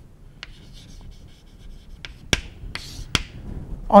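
Chalk writing on a blackboard: faint scratching strokes with a few sharp taps as the chalk strikes the board, the loudest taps coming in the second half.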